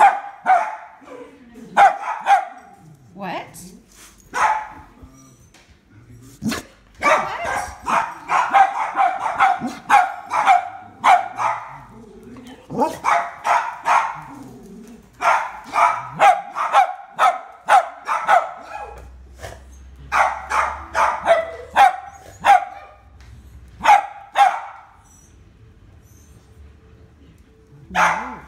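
A dog barking in quick runs of sharp barks, several bouts with short pauses between, stopping about three seconds before the end. Demand barking, which the owner answers as a plea to be fed.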